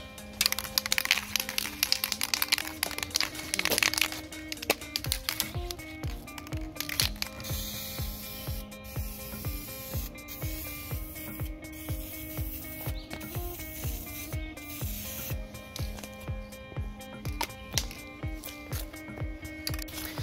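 Aerosol spray can of Minwax fast-drying clear satin polyurethane hissing as coats of sealer are sprayed on, a long burst in the first few seconds and shorter ones later. Background music with a steady beat plays throughout.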